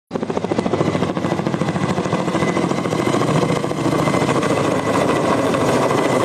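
Firefighting helicopter hovering low overhead with a water bucket slung on a long line, its rotor beating in a fast, steady rhythm.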